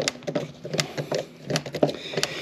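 Hand screwdriver tightening screws into a plastic bow cover plate: an irregular run of sharp clicks and ticks, several a second, as the bit turns in the screw heads.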